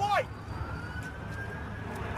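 An emergency vehicle siren wailing in one slow rising sweep over a steady low street rumble, with a brief shout right at the start.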